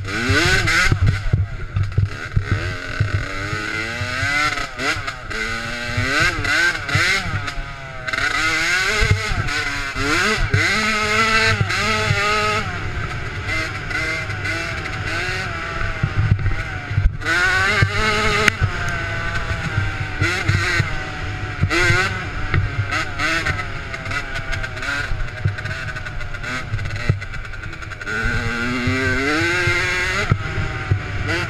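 Engine of a 65cc youth dirt bike, heard from a camera mounted on the bike, repeatedly revving up and dropping back as it is ridden hard over rough trail, with another rising rev near the end. Wind and jolts on the microphone run under it.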